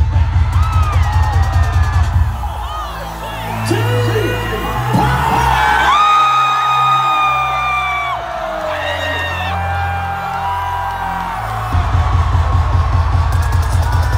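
Live concert music over the PA: a fast pulsing bass beat drops out about two seconds in, leaving held synth tones, and comes back near the end. The crowd cheers and whoops over it.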